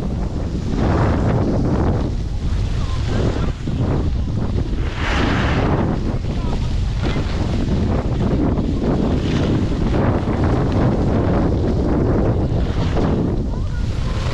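Wind buffeting the microphone while riding fast down a groomed slope, with the hiss of edges scraping over packed snow rising and falling every couple of seconds as turns are carved.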